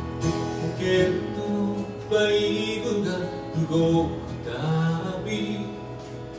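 Live band music: an acoustic guitar played along with a drum kit, with steady percussion hits.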